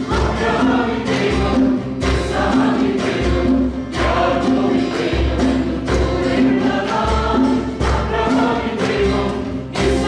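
Women singing a worship song together as a group, over a steady low beat of accompaniment that pulses about every three-quarters of a second.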